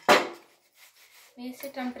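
A single sharp clunk just as it begins, dying away over about half a second: the gas stove's metal pan-support grate knocking as it is lifted off the hob.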